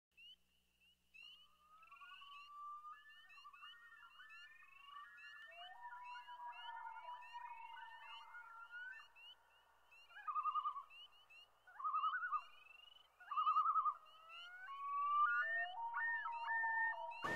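Faint, overlapping whistled tones that warble and glide in pitch, with short rising chirps repeating above them. Three louder trilled bursts come in quick succession about two thirds of the way through.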